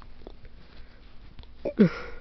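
A person acting out a sneeze for a puppet with a cold: a short falling 'ah' near the end, breaking into a loud, breathy 'choo', after faint sniffling.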